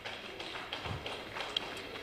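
Faint, scattered hand-clapping from an audience, a few irregular claps a second.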